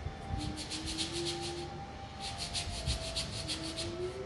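A file rubbed quickly back and forth on a customer's feet during a pedicure, about eight strokes a second, in two runs with a short break between.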